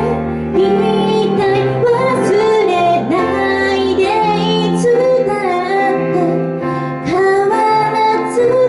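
A woman singing a melody live into a handheld microphone, with long held notes, over instrumental accompaniment with sustained low notes.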